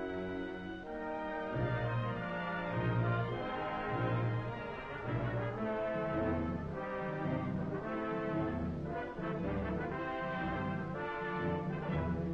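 Dramatic orchestral film-trailer music led by brass, with a low note repeated about once a second through the first half.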